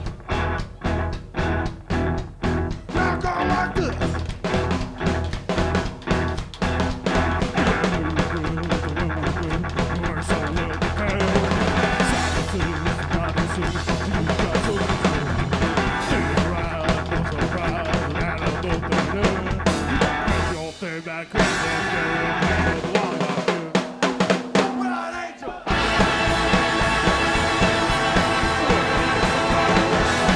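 Live rock band playing loud through a club PA: the drums and band hit short, evenly spaced stabs for the first several seconds, then the full band plays with guitars and drums. A little after twenty seconds the bass and drums drop out for about five seconds while sparser playing carries on, and then the full band comes back in.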